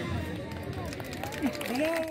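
Voices of people talking in an outdoor crowd, the marching band's music having just stopped.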